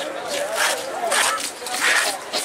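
Knife scraping the scales off a white snapper on a wooden chopping block, in about three quick strokes, with voices in the background.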